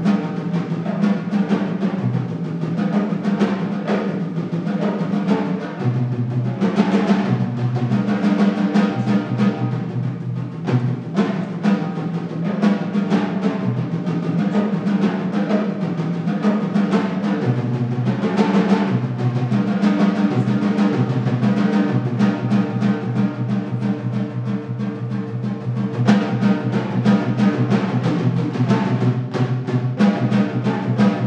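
Solo percussion piece played with sticks on a set of tom-toms tuned to different pitches: fast, dense runs of strokes moving back and forth between the higher and lower drums.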